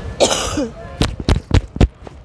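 A woman coughing while crying: a rough, voiced cough about a quarter second in, then four short sharp coughs in quick succession over the last second.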